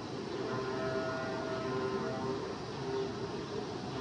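Steady workshop background noise, an even hum and hiss, with a faint steady humming tone in the first half.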